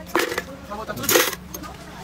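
Spoons clattering and clinking, in two short bursts about a second apart, with faint voices in the background.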